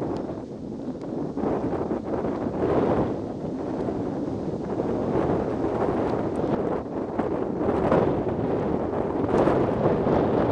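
Wind buffeting the camera's microphone: a steady low rumbling hiss that swells and fades in gusts, loudest around three seconds in and again in the last two seconds.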